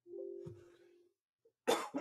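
A man's short, steady closed-mouth hum, about a second long, fading out.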